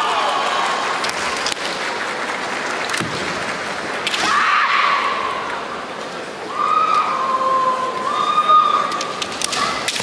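Women's kendo kiai: long, high-pitched shouted cries, each held for a second or more and some rising sharply at the start, as the two fighters press together in a clinch. A few sharp knocks of bamboo shinai and feet on the wooden floor come between the cries, over a steady murmur from the arena.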